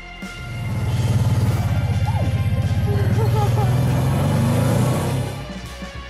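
Kawasaki Teryx 800 side-by-side's V-twin engine pulling hard under load on a steep, rutted climb: a loud low pulsing that builds over the first second and eases off near the end, with background music underneath.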